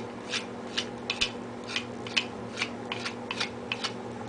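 Matted dog fur being snipped apart with a grooming cutting tool: about a dozen short, crisp snips at irregular intervals, two or three a second.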